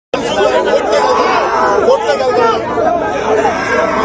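Loud chatter of a close crowd of men talking over one another, with no pause.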